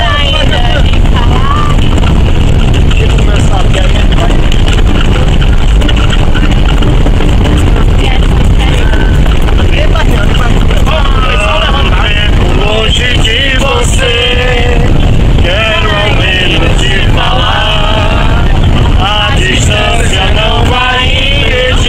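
Loud steady rumble of a coach bus on the move, heard from inside the cabin, with people's voices over it that grow more frequent from about halfway through.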